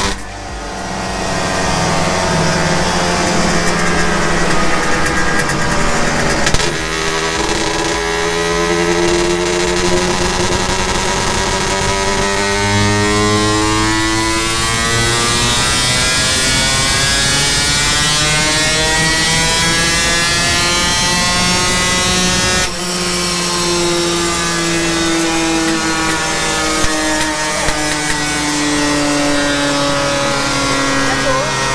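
Yamaha RXZ two-stroke single-cylinder motorcycle engine, with its exhaust pipe fitted, revving hard on a chassis dyno in long pulls whose pitch glides up. The pitch breaks off abruptly about six seconds in and again about twenty-three seconds in, then runs lower and eases down near the end.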